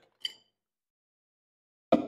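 A light glass clink a quarter of a second in, then a single sharp knock near the end as the ice pitcher is set down on the counter.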